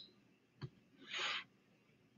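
Quiet room tone with one faint click, typical of a slide being advanced, and a short soft breath just past a second in.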